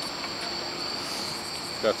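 Crickets chirring in a steady, unbroken high-pitched drone.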